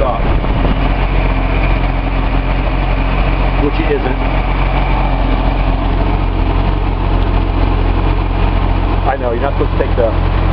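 Datsun L28 straight-six fuel-injected engine idling steadily while still cold, with all cylinders firing again.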